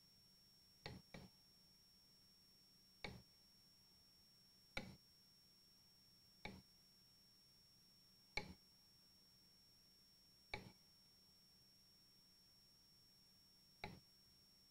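Kitchen knife tapping down onto a wooden cutting board while slicing a grilled steak, eight short sharp knocks: two close together about a second in, then one every two seconds or so.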